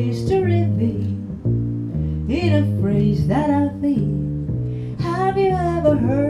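A woman singing a jazz standard with a small jazz combo, her voice held with vibrato on long notes over a double bass walking about two notes a second.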